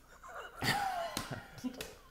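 People bursting into breathy, gasping laughter about half a second in, with a short squealing note that falls in pitch.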